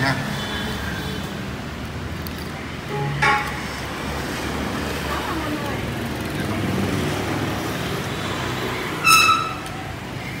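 Street traffic ambience: a steady rumble of passing vehicles, with a short vehicle horn beeping once near the end.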